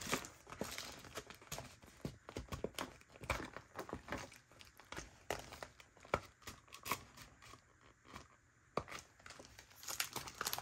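Clear plastic binder envelope pages and vinyl pouches being handled: crinkling and rustling with many small, sharp clicks and taps, briefly pausing about eight seconds in.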